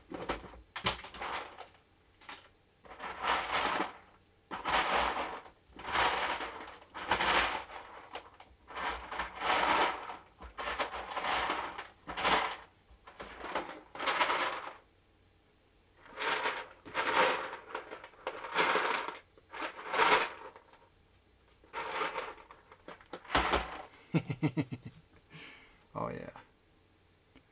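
Repeated rustling and scraping of something being handled off to the side, in separate bursts about a second long, a second or two apart.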